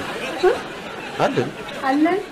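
Speech only: people talking in conversation, with no other sound standing out.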